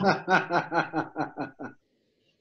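A person laughing in a quick run of short ha-ha sounds, about six a second, that fade and stop shortly before the end.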